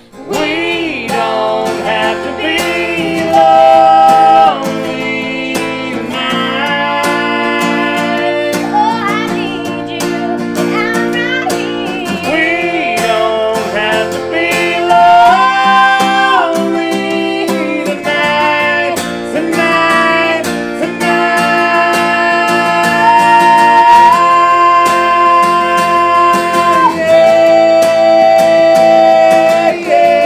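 Acoustic country duet: a woman and a man singing together over a strummed acoustic guitar, with long held notes in the last third.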